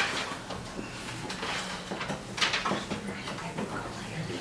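Sheet music being handled: paper rustling and a few light knocks, three of them standing out, over a faint low murmur of the room.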